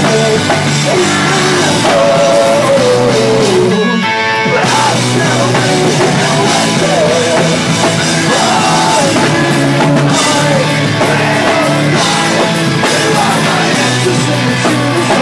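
Live rock band playing at full volume: electric guitars, bass and drum kit with a male singer's vocals. The band stops for an instant about four seconds in, then comes back in.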